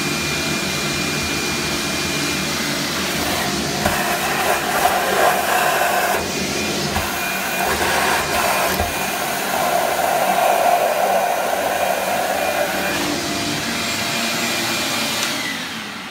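Wet/dry shop vacuum, filter removed, running with its hose in a shower drain pipe, sucking out standing water and a hair-and-soap clog. Its sound surges and changes in the middle as the hose draws from the pipe, and the motor winds down at the very end.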